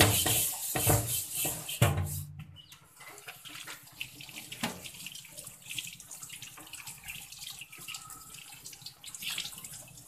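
A wire scourer rubbing over a metal wok in a stainless steel sink, in loud repeated strokes for the first two seconds or so. Then tap water runs and splashes over the wok as it is rinsed, quieter and even.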